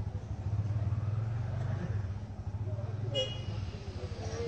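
A steady low motor drone with a fast pulse, and a short high horn-like toot about three seconds in.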